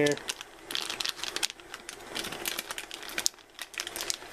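Metallised anti-static bag crinkling as fingers work a solid-state drive out of it, with a dense run of irregular crackles.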